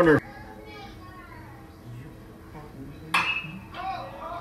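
Metal baseball bat hitting a pitched ball about three seconds in: one sharp, ringing ping, the contact that sends up an infield pop-up. Faint crowd voices carry on underneath.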